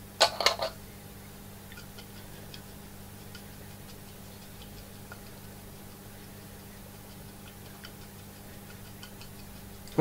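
A short clatter as the scatter container is handled, then faint, sparse ticks of grass scatter sprinkled onto a glued scouring-pad strip and falling into the plastic tray below, over a steady low hum.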